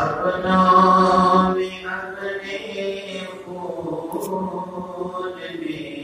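A man's voice chanting a devotional manqabat in long, drawn-out held notes, with a short break about two seconds in.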